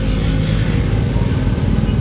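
An engine running steadily: a low hum with a fast, even pulse.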